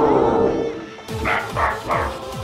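A short laugh in three quick bursts starting about a second in, over background music with a repeating falling bass throb.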